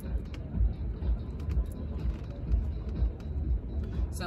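Outdoor ambience: a low, uneven rumble with a few faint ticks.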